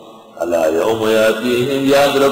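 A man's voice reciting in a chant-like, drawn-out tone, starting about half a second in after a short pause.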